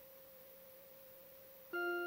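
A keyboard instrument starts a held chord of steady, unfading notes about a second and a half in, the opening of the church music that follows the sign of peace. Before it there is a near-silent pause with only a faint steady hum.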